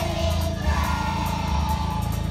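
Song with a steady bass beat, with a group of young children singing along.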